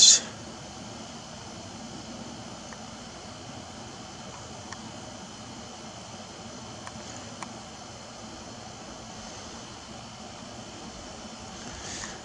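Steady, even background hiss with no distinct event, broken only by a few faint ticks.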